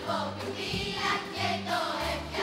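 Children's choir singing with a symphony orchestra accompanying, over held bass notes that change about every half second.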